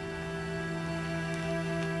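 Soft, sad-toned background music: a single chord held steadily throughout.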